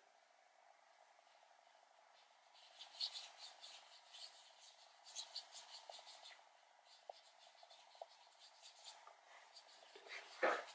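Near silence with faint scratchy strokes of a paintbrush laying acrylic paint on paper, in two short runs about three and five seconds in, followed by a few single faint ticks.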